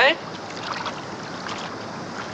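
Steady rushing noise of river water, even and unbroken, after a man's voice finishes a word at the very start.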